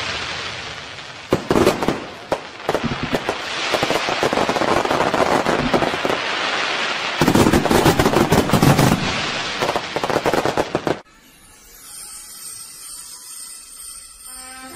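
Fireworks going off: a dense crackle of rapid pops with two louder flurries of bangs. It cuts off suddenly about eleven seconds in, and faint music follows.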